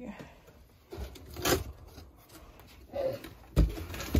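Cardboard shipping box being handled and moved about on a desk: a few separate knocks and scrapes, the loudest near the end.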